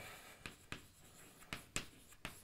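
Chalk on a blackboard as words are written: about five short, sharp taps and scrapes of the chalk, faint.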